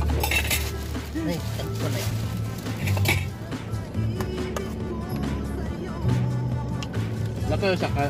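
A spoon clinking and scraping against a metal rice-cooker pot as rice is scooped out, a few short clinks, over steady background music.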